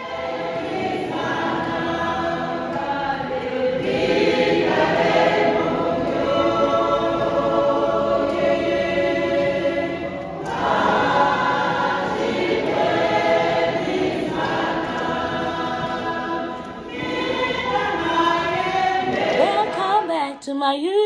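Church congregation singing a hymn together, many voices in long phrases with short breaks between them.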